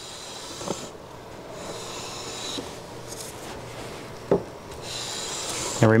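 Hand plane (a WoodRiver No. 5-1/2 jack plane) taking long, light shaving strokes along the edge of a red oak board, planing off a high edge to bring it square to the reference face. A steady hissing shave that swells twice, with a light knock about a second in and another past four seconds.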